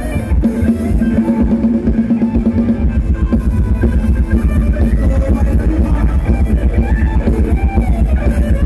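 Live band playing upbeat Thai ramwong dance music, with a steady, fast drum-kit beat over strong bass and a held note in the first couple of seconds.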